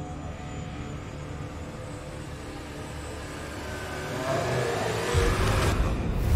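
Dramatic horror sound design: a low, ominous drone that swells from about four seconds into a loud rising whoosh, with a deep rumble coming in about a second later and the rush cutting off abruptly just before the end.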